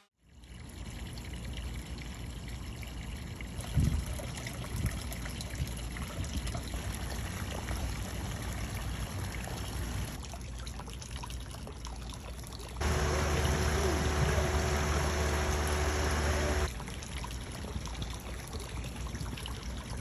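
Cooling water from boats' marine air-conditioning discharge outlets pouring from the hull and splashing into the water below, in a run of short clips. A louder stretch in the middle carries a low steady hum under the splashing.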